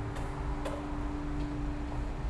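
The last acoustic guitar chord of a live song ringing out over low room rumble, dying away near the end, with a few small clicks.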